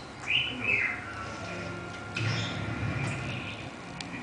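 A Patagonian conure gives a short, high chirping call that falls in pitch, about a third of a second in.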